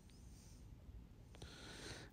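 Near silence: faint room tone, with a soft breath near the end.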